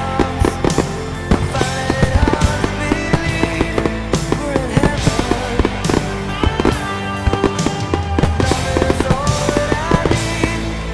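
Loud music with a rock beat, with fireworks bursting through it as a series of sharp bangs: a display fired to music.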